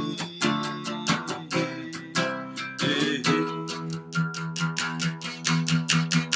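Acoustic guitar strummed in a quick, even rhythm, its chords ringing between the strokes.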